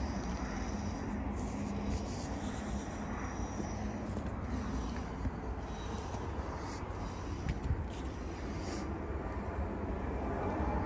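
Jet airliners taking off from a nearby runway: a steady, even rumble with no distinct events.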